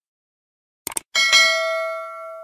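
Subscribe-button animation sound effect: two quick mouse clicks about a second in, followed by a bright bell ding that rings on and fades.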